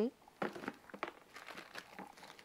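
Plastic-wrapped soap bars crinkling and clicking as they are rummaged through and one is lifted out of a plastic tub: a run of irregular small crackles and clicks.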